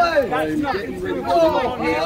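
Speech only: several people talking over one another, with no words clear enough to pick out.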